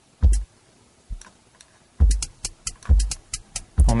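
A drum loop plays back through Cubase 5's LoopMash at 135 BPM, with a kick drum on every other beat and short high clicks between the kicks. About halfway through, the pattern gets busier with quick hits as another loop's slices are mixed in.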